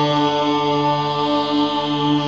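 Devotional chanting in a channel sign-off jingle: a voice holds one long, steady chanted note over Indian devotional music.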